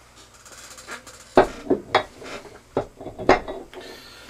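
A steel gas-check punch-and-die assembly knocking against the metal base plate of an arbor press as it is fitted into place: a handful of sharp metallic clinks.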